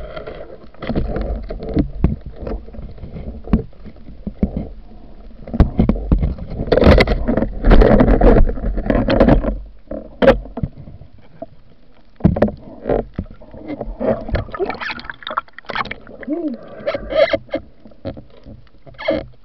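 Underwater movement and handling noise through a waterproof camera housing: a muffled rush of water with irregular knocks and clicks, loudest about six to ten seconds in.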